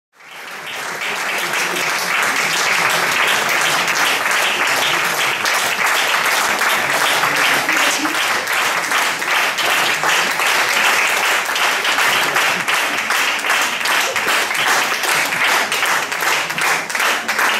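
Audience applause: many people clapping together in a dense, steady patter that swells up over the first second or two.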